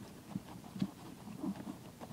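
Sheet of construction paper handled and pressed while folding a paper box, with four or so soft, irregular knocks as the folded sides are worked and tapped down, the loudest a little under a second in.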